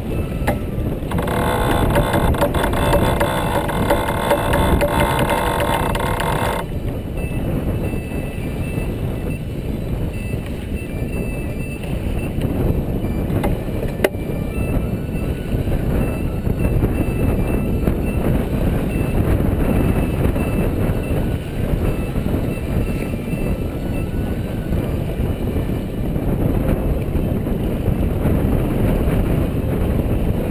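Wind buffeting the microphone on a sailboat under way, with water rushing along the hull, a steady rumble throughout. For about five seconds near the start a steady tone with several pitches sounds over it, and a single sharp click comes about halfway.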